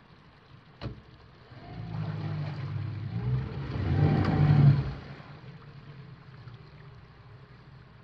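Small outboard motor on an aluminium tinny starting about a second and a half in. It runs louder for a few seconds, then eases back to a lower steady running note as the boat moves off.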